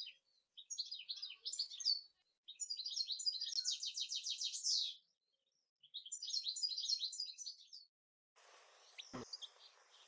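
Small birds chirping in fast, high trilling phrases broken by short silent gaps. From about eight seconds in, a steady outdoor hiss comes in under a few more chirps.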